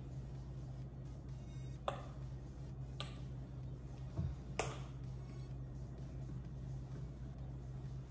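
A few short, sharp plastic clicks, three spread over the first half, and a dull knock, from a plastic squeeze bottle of strawberry purée being handled and squeezed over a cocktail shaker, with a steady low hum underneath.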